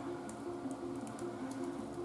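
Quiet background music of soft, held notes, with a few faint ticks and rustles as the folded paper pages of a small domino-covered book are opened by hand.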